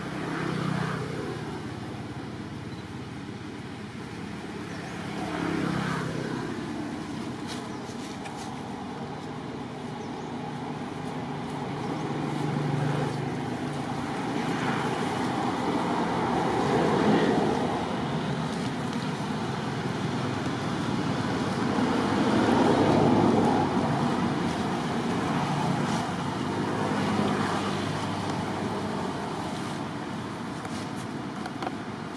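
Road traffic going past: motor vehicle noise that swells and fades several times, with brief low engine tones as vehicles pass.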